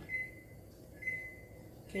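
Two short, faint electronic beeps about a second apart, each a single steady high tone, over low room noise.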